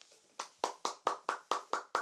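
One person clapping hands in an even run of about eight claps, roughly four or five a second, starting about half a second in.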